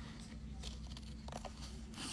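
Faint snips and paper rustle of a nail-decal (slider) sheet being cut out, a few small sounds in the second half, over a low steady hum.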